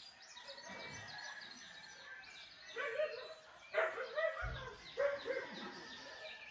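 Birds chirping and calling through the trees, with a few louder, lower calls from about three to five seconds in and a brief low thump in the middle.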